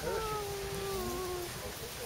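A goat bleating: one long call that slides slowly down in pitch and fades out after about a second and a half.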